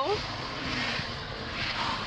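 Steady cabin noise of a Ford Mustang driving on the road: an even rush of tyre and wind noise heard from inside the car.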